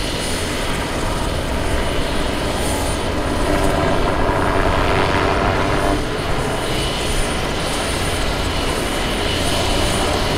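Goodyear airship Wingfoot Three, a Zeppelin NT semi-rigid airship, flying low with its propeller engines droning steadily; the sound swells from about three and a half to six seconds in.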